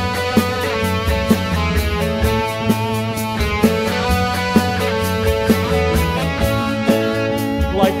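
Live rock band playing an instrumental passage on keyboard, electric guitar and bass, over a steady beat. A voice comes back in singing right at the end.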